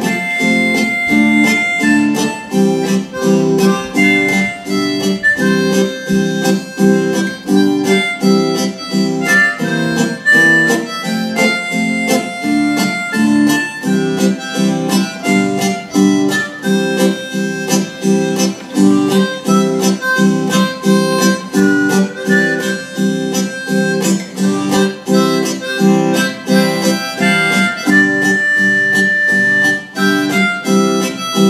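Harmonica playing a slow melody over a strummed acoustic guitar, an instrumental duet with a steady strumming rhythm. The harmonica holds a longer note near the end.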